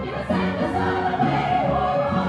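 A musical-theatre chorus of young voices singing together, accompanied live by the pit keyboard playing sustained chords.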